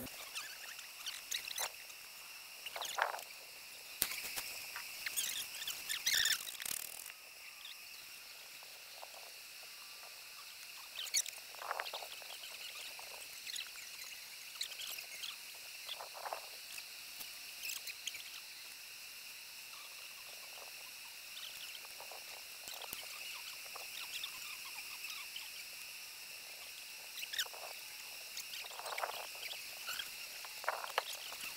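Quiet outdoor ambience: a steady high-pitched hum with scattered short chirps, about a second long each, and a few soft clicks and rustles in the first seven seconds or so.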